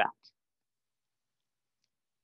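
The end of a man's spoken word, then near silence with a faint click just after it.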